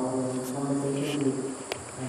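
A woman speaking into a handheld microphone in a language the English transcript does not record, with a faint steady high-pitched whine behind the voice and a single sharp click near the end.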